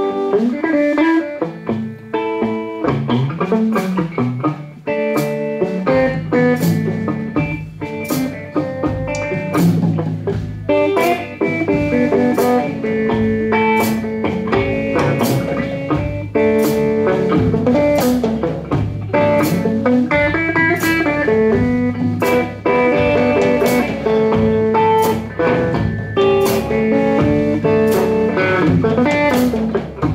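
Live hill country blues played on guitar and drum kit: an instrumental passage built on a repeating guitar riff over a steady beat, the drums filling out with kick drum about six seconds in.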